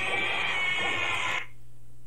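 A cartoon raccoon character's long, high-pitched yell, held steadily, which cuts off about one and a half seconds in and leaves only a low hum.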